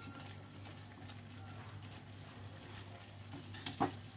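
Faint sizzle of a thick paste frying in a nonstick pan as a silicone spatula stirs it, with a couple of sharp knocks near the end.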